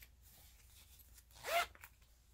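A short zip from the simple zipper on a small PUL-lined fabric bag, one quick pull about one and a half seconds in.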